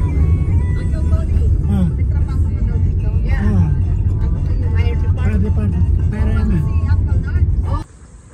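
Car cabin road noise: a steady low rumble from the moving car, with music and a voice playing over it. Both cut off suddenly just before the end.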